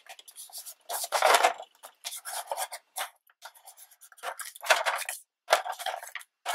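Scrapbook paper being slid, straightened and rubbed against a grooved plastic scoring board, in a series of short scraping rustles. The loudest comes about a second in.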